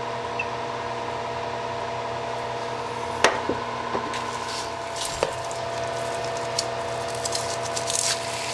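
Olive oil heating in an enameled cast-iron Dutch oven, beginning to crackle and sizzle lightly from about halfway, with a couple of sharp clicks before that. A steady hum with several tones runs underneath.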